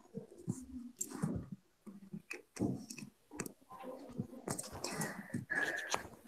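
Faint, scattered household noises through an unmuted microphone on a video call: irregular clicks and indistinct knocks and rustles, with a short steady tone late on.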